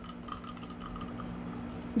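A steady low hum under faint background noise, with no speech.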